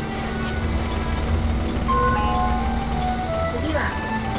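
A melody plays over the steady low rumble of a bus engine as the bus pulls away, with a gliding voice-like sound near the end.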